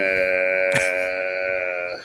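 A man's voice holding one long, level-pitched "uhhh" for about two seconds, with a sharp click about three-quarters of a second in.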